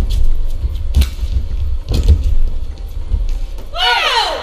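Badminton rackets striking a shuttlecock, sharp hits about once a second during a rally, over a steady low rumble. Near the end comes a short squeak that falls in pitch.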